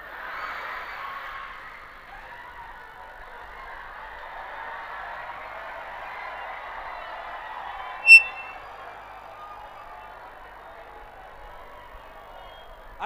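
Audience laughing and cheering in a large hall, a steady crowd noise, with one brief shrill high-pitched tone about eight seconds in standing out as the loudest moment.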